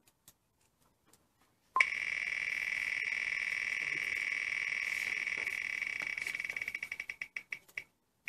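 Spinning prize wheel's ticking sound effect played through laptop speakers: the ticks start about two seconds in so fast that they blur into a buzz, then slow to separate ticks further and further apart as the wheel comes to a stop near the end. A few faint clicks come first.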